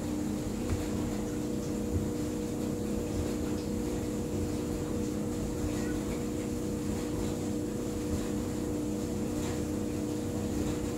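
Steady mechanical hum from a running room appliance, several low tones held constant throughout.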